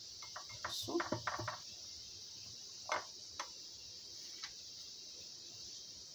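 Light handling sounds of a hand on a metal muffin tray: a cluster of soft clicks and taps in the first second and a half, then a few faint isolated ticks over a steady low hiss.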